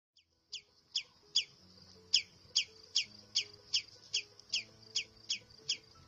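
A bird calling, a short falling chirp repeated about two and a half times a second with one brief pause, over faint low sustained tones.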